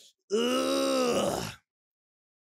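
A man's long, drawn-out groan lasting a little over a second, a pitched vocal sound that sags slightly in pitch and then stops. It is a groan of amazement at a heavy track.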